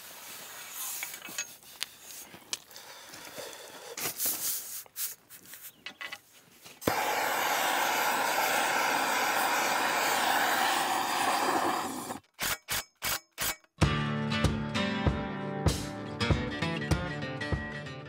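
Tool scraping and clicking in gravel and dirt for the first several seconds. A steady loud hiss follows for about five seconds, then the sound chops on and off, and background music plays from about two-thirds of the way in.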